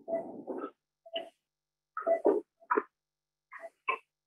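Short, broken fragments of a person's voice over a video-call link, cut into separate bursts by the call's noise gating.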